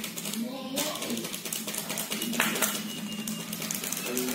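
Plastic sachet crinkling and crackling in the hands as it is handled, with indistinct voices in the background.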